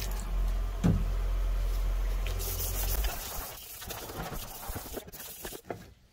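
Water poured from a plastic bottle splashing over a painted part during hand wet-sanding with 600-grit paper, over a steady low rumble that stops about halfway. Then a few light clicks and taps as the wet part is handled.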